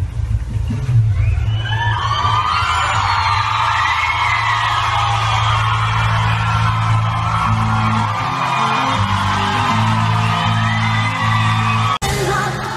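Live rock band playing through a concert PA, with a steady bass line and, from about two seconds in, a singing voice over it, with whoops from the crowd.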